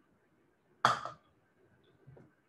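A single sharp knock as a plastic measuring cup and funnel are handled on the counter, near silence around it.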